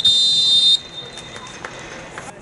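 Referee's whistle: one long, shrill blast of about three-quarters of a second, then a faint ringing trace.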